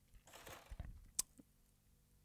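Quiet room tone with a faint steady hum, a soft hiss lasting about half a second, then one sharp click a little past the middle and a smaller one just after.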